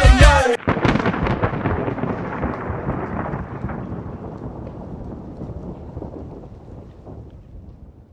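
Hip hop music cuts off about half a second in, then a rumbling, crackling noise like thunder and rain fades out slowly over the following seconds.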